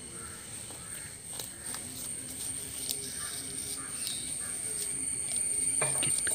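Scattered bird calls over a steady high-pitched whine, with a few faint clicks.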